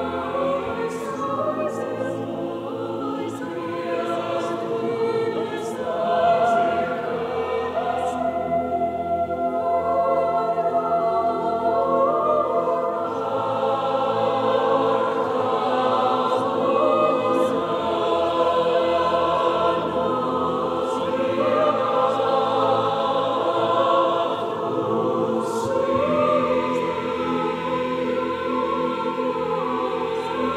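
Mixed choir of women's and men's voices singing sustained, slowly shifting chords, with brief hissing consonants now and then.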